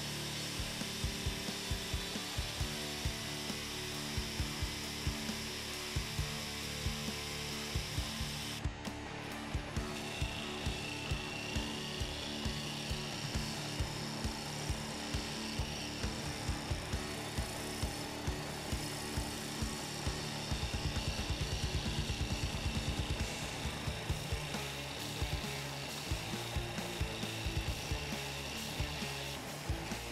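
Background techno music with a steady beat over the noise of a WS-15 bench drill press turning a wooden handle blank while it is shaped by hand. After a break about nine seconds in, a thin high whine runs through most of the rest.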